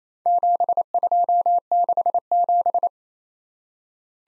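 Morse code keyed as a single steady beep tone at 28 words per minute: four characters, 7 2 6 7, sent as four quick groups of dits and dahs that end about three seconds in.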